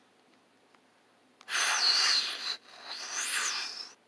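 Two breathy hissing noises, each about a second long, with a thin whistling tone running through them; the first starts about one and a half seconds in after near silence.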